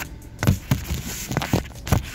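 A few dull thumps and knocks of a handheld phone camera being moved and handled, over the low steady hum of a Honda car engine idling.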